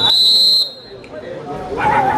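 Referee's whistle: one steady high blast that cuts off sharply about two-thirds of a second in, ending a kabaddi raid as the defenders tackle the raider. Voices and crowd chatter pick up again near the end.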